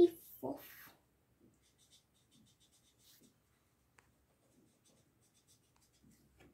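Felt-tip marker rubbing on paper in short, faint, scratchy strokes as a drawing is coloured in.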